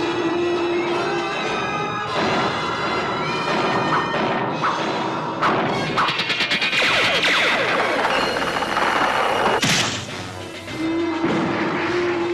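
Dramatic action-cartoon background score with sound-effect crashes and booms. About halfway through, a long dense energy-blast effect plays as the sword fires; it cuts off suddenly near the ten-second mark, and the music carries on.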